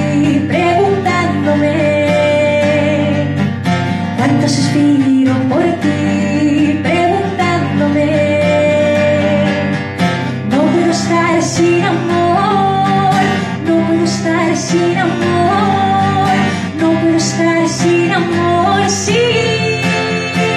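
A woman singing a song in jota rhythm, accompanying herself on a strummed acoustic guitar.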